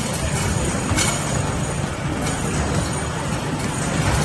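Rubber basketballs from an arcade basketball machine in constant rumbling motion as they roll down its return ramp, with sharp thuds against the backboard and rim about a second in and again a little after two seconds.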